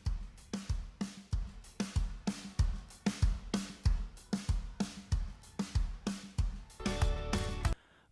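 Isolated drum-kit stem of a song's multitrack playing solo: a steady beat of kick drum and snare with cymbals, the main hits about twice a second.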